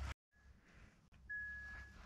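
Near silence after an abrupt cut-off, then a faint, steady high-pitched tone for about the last second.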